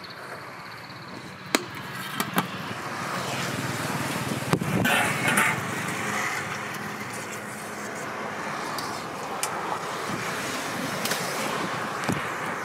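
Steel serving spoons and ladles clinking against steel pots and plates a few times, sharp clicks in the first five seconds, over a steady background of road traffic that grows louder after about three seconds.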